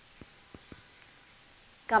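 Quiet bird chirping, short high calls repeated during the first second, with a few soft scattered ticks underneath.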